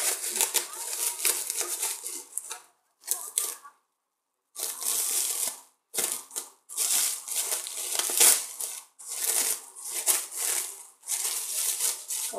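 Clear plastic wrapping crinkling as it is pulled and torn off a bundle of trading cards by hand, in irregular bursts with brief pauses, one nearly silent gap about four seconds in.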